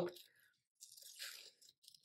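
Scissors cutting through a sticker sheet: a faint, short papery snip about a second in.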